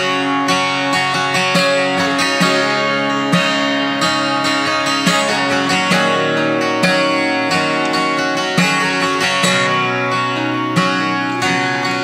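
Acoustic guitar strummed steadily through a run of chords, the instrumental intro of a song played live just after a spoken count-in.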